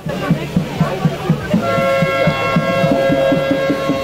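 Fans' drum beaten in a fast, steady rhythm of about four beats a second. About one and a half seconds in, a long, steady horn blast joins it and holds on.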